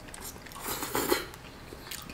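A person slurping and chewing a mouthful of instant cup noodles, the loudest eating noise about a second in.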